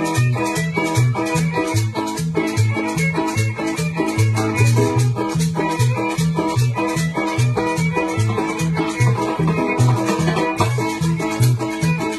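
Salvadoran chanchona band playing live: a bass line plods in a steady dance rhythm under guitar, with a shaker keeping even time on top.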